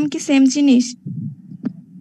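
A woman's voice speaking for about the first second, then a low steady hum with a single short click about one and a half seconds in.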